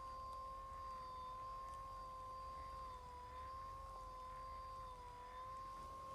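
Electric shiatsu massage cushion running: a faint, steady motor whine whose pitch sags slightly a couple of times as the kneading heads turn.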